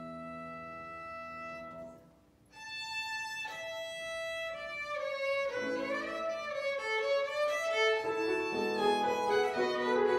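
Violin with upright piano accompaniment: a held chord dies away about two seconds in, then after a brief pause the violin comes back in alone, and the piano joins below it about halfway through as the music grows louder and busier.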